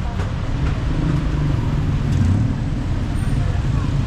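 Street traffic: a steady low rumble of vehicle engines with a faint haze of street noise above it.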